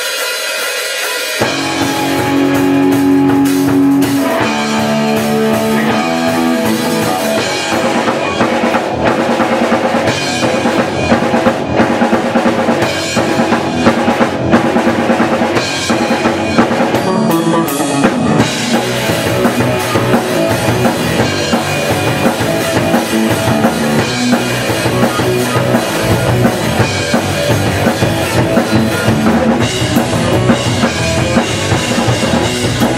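Live rock band playing: an electric guitar riff starts about a second and a half in, and the drum kit and bass drum join a few seconds later, so the full band is playing hard.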